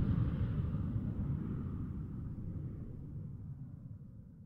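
Jet engine roar, a low rumbling noise fading away steadily.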